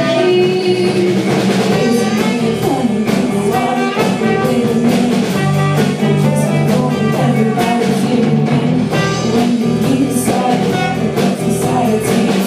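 Live band playing a song: drum kit keeping a steady beat under electric bass, guitars and trumpet, with singing.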